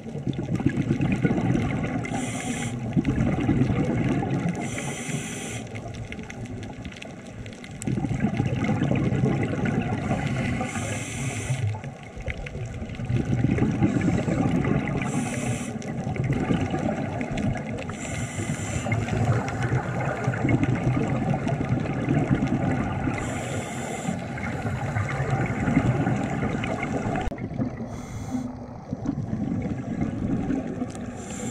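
Scuba diver breathing through a regulator underwater. Long bubbling exhalations alternate with short hissing inhalations, one breath every four to six seconds.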